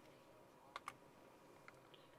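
Near silence with two faint clicks close together a little before the middle, as the switch of a small handheld UV flashlight is pressed to turn it on, then a light tick of handling.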